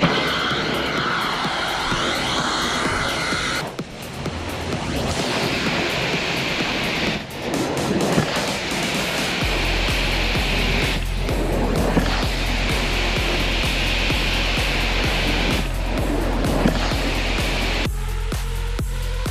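Steady suction hiss of a hot-water carpet-extraction wand drawn across carpet, breaking off briefly every few seconds between strokes. Music is laid over it, with a steady beat that comes in about halfway through.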